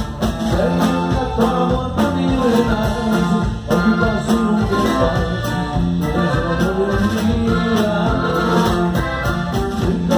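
Live norteño band music: button accordion, guitars and drum kit playing together at a steady beat.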